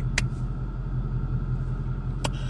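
Low, steady rumble of a car running, heard from inside the cabin, with one sharp click shortly after the start.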